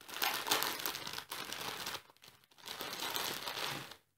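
Plastic film wrapper of a Nissin Top Ramen instant noodle packet crinkling as it is opened and handled. It comes in two spells with a short pause about halfway through.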